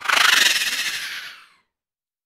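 End-card sound effect: a bright, hissing rush that starts suddenly and fades out within about a second and a half.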